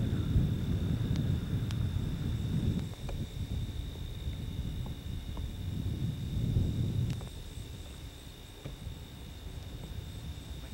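Wind buffeting a camcorder's built-in microphone: a low rumble in surges, strongest over the first three seconds and again around six to seven seconds. A steady faint high whine runs under it.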